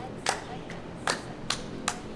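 Two people playing a hand-clapping game: sharp hand claps and palm-to-palm slaps in a quick, even rhythm of about two to three a second.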